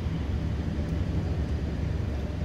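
Van engine idling while parked: a steady low rumble heard from inside the cab.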